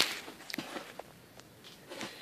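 Handling rustle as a handheld camera is swung round, loudest right at the start, then a few faint, separate footsteps.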